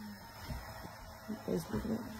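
Quiet room tone with faint voices in the background, strongest about one and a half seconds in.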